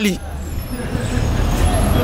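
Steady low rumble of street traffic: vehicle engines running.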